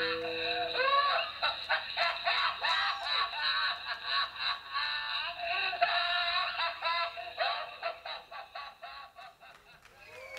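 Amplified electric violin playing alone in quick swooping, sliding phrases after the bass and drums drop out, growing sparser and fading toward the end as the piece closes.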